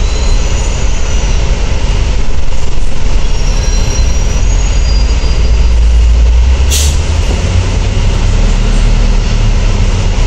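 Volvo B10TL double-decker bus with its Volvo D10A285 diesel engine, a steady low rumble as the bus slows and halts at a stop. Thin high squeals in the first half, typical of brakes, and a short hiss about seven seconds in.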